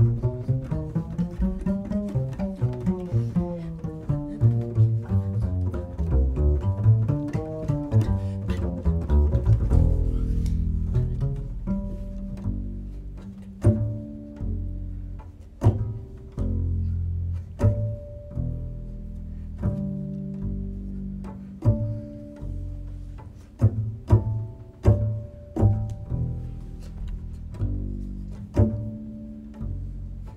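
Solo acoustic double bass played pizzicato: a fast run of quickly plucked notes for the first ten seconds or so, then sparser plucked notes and double stops that each ring out for a second or two.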